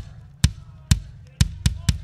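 Drum kit struck hard, a series of heavy hits with a deep ring between them, about two a second and coming closer together near the end.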